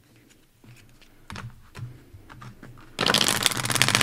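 A deck of tarot cards being shuffled by hand: a few soft taps and card handling, then about three seconds in a loud, rapid riffle shuffle, a dense flutter of cards falling together.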